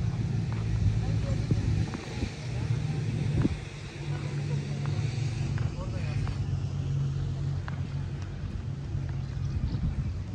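Steady low engine hum from a moored river passenger boat's engine running at idle, with scattered small clicks and faint voices around it.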